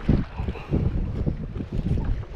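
Wind buffeting the microphone as an uneven low rumble, over the wash of open sea around a small boat.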